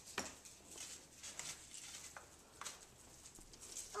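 Faint crinkling and light clicks of a small gift package being unwrapped and opened by hand, a few separate soft sounds spread across the seconds.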